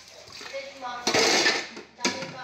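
Dishes and cutlery clattering in a kitchen sink as they are washed by hand, loudest for about half a second just after the middle.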